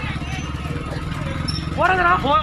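Motorcycle engines idling with a steady low rumble and a fast, even pulse, while people's voices are heard faintly, rising near the end.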